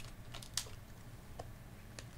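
Faint typing on a keyboard, a few light irregular clicks over a low steady hum.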